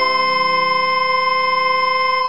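A single chord held steady on a synthesized sustained instrument, computer-rendered score playback, with no change in pitch or loudness.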